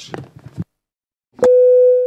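A single loud, clear, mid-pitched chime tone that starts with a click about one and a half seconds in and fades away over a bit more than a second, a signal tone in the council chamber's sound system.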